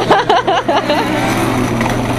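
Young children's excited squealing, a quick run of rising and falling cries in the first second, over a steady low hum.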